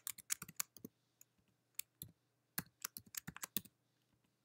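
Faint clicking of computer keyboard keys being typed in two quick runs, with a sparser pause of about a second and a half between them.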